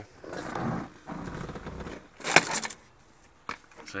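Rustling and scraping handling noise as a handheld camera is moved around and brushes against the car's interior, loudest in a short scrape about two and a half seconds in, then a few faint clicks.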